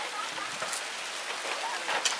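Steady rain falling on and around a thatched roof: an even hiss with a few sharper drop hits.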